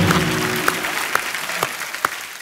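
Studio audience applauding, slowly dying down, with a short music sting fading out in the first half second.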